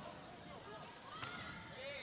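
Faint arena crowd murmur, with a volleyball bounced once on the hard court floor about a second in as a player readies her serve.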